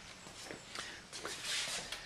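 Faint shuffling and rustling of people moving and handling parts, with a few soft knocks and a louder scuffing stretch about a second and a half in.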